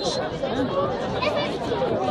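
Several people talking at once near the microphone: overlapping, indistinct chatter with no single voice clear.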